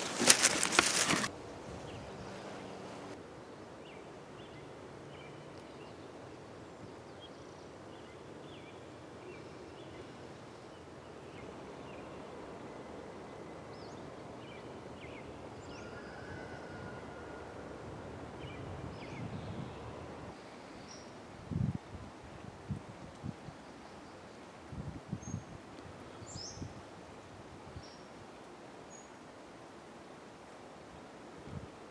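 Quiet outdoor woodland ambience with faint, short bird chirps scattered throughout. Footsteps are heard at the very start, and a few soft low thumps come about two-thirds of the way in.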